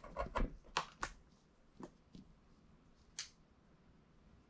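A quick run of light clicks and knocks in the first second, a single knock shortly after, and a brief rustle later on: small plastic items (USB cord, bulb and power bank) being handled on a tabletop while the bulb is plugged in.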